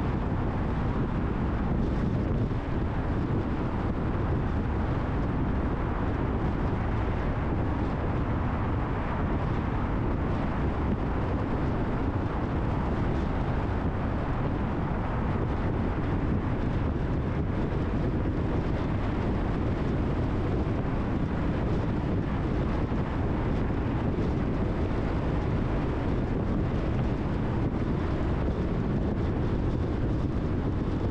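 Steady road noise of a car cruising on an expressway: a constant low tyre rumble with a rush of wind, unchanging throughout.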